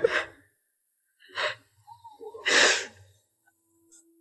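A woman crying: her wail fades out at the start, then two sharp sobbing breaths, the second louder, about a second and a half and two and a half seconds in.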